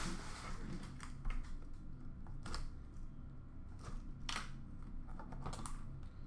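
Hands handling and opening a cardboard hockey-card pack box, with a few scattered sharp clicks and light rustles.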